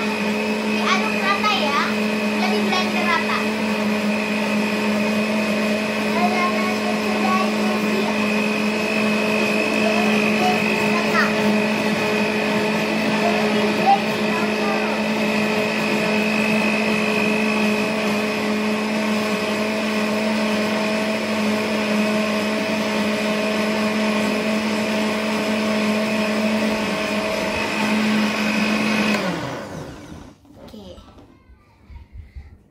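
Philips countertop blender motor running steadily, blending a liquid chocolate pudding mix, then switched off and stopping abruptly near the end.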